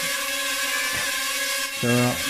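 DJI Tello mini drone hovering, its four small propellers giving a steady buzz: several held tones over a hiss.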